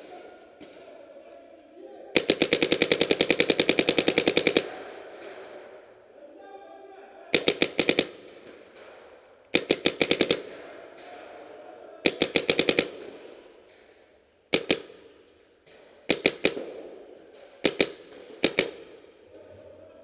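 Paintball marker firing close by in rapid strings: a long burst of roughly a dozen shots a second lasting about two and a half seconds, then shorter bursts of a few shots and single shots every couple of seconds.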